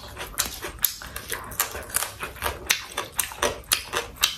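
Close-miked eating of crispy fried quail: bites and chewing crunches, several a second in an irregular rhythm, with wet mouth sounds between them.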